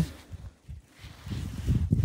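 Footsteps on a snow-covered wooden deck, starting about a second in and getting louder.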